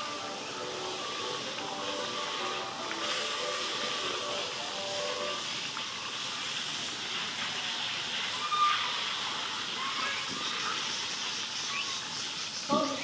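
Background music playing over a loudspeaker, which fades out about halfway through, with a steady high hiss underneath throughout. A brief, louder sound comes near the three-quarter mark.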